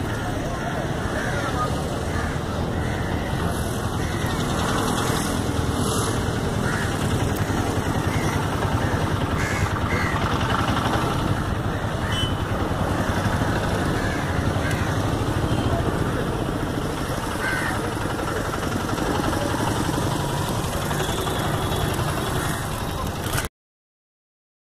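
Outdoor ambience of indistinct voices and road traffic over a steady rush of noise, cutting off suddenly near the end.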